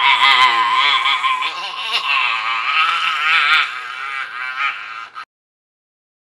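Several young men's voices yelling a long, drawn-out "Whassuuup!" together over the phone, the pitch wavering up and down. It cuts off suddenly a little after five seconds in.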